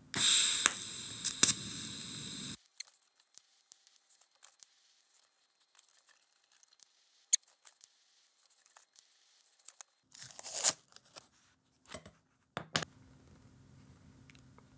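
TIG welding arc crackling and hissing, starting suddenly and cutting off after about two and a half seconds as a short weld is laid. A brief second hiss follows about ten seconds in, with a few faint clicks.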